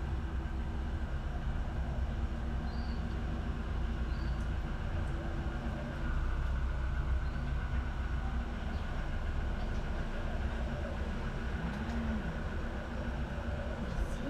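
A steady low mechanical rumble and hum, with a few faint, short, high chirps now and then.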